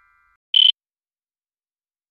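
The last ringing of a chime dies away, then a single short, high-pitched electronic beep sounds about half a second in, a logo-intro sound effect.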